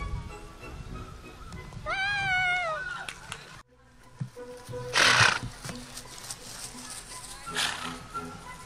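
A horse whinnies once about two seconds in, a wavering call that drops in pitch at its end. After a short break in the recording, two brief bursts of rushing noise follow, the first one the loudest sound here.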